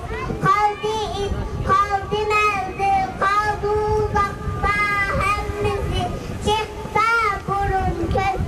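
A young child singing into a handheld microphone, a high voice in short phrases of held and bending notes.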